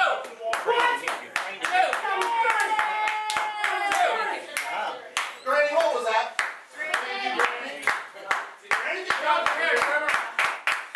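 Hands clapping in a steady rhythm, about three claps a second, with voices shouting over it. One voice holds a long yell a few seconds in.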